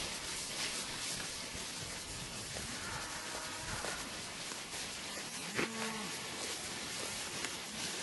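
Cattle mooing: two short, faint calls, the second clearer and a little past halfway, over a steady hiss.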